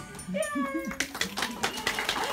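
A child's brief high-pitched call, falling slightly in pitch, then clapping starts about halfway through and carries on.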